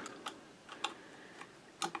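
A few faint, scattered metal ticks of a screwdriver fitting into and lightly snugging the screw on a Singer 66's oscillating-hook lever, fixing the hook in its newly set timing.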